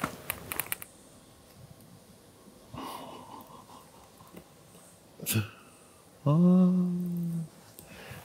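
Faint clicks and soft scrapes from a screwdriver probing the windscreen seal of a Mercedes R107. About six seconds in comes a man's long, drawn-out "oh" of surprise, the loudest sound: the screwdriver has gone straight through soft sealing compound where he expected hardened windscreen adhesive.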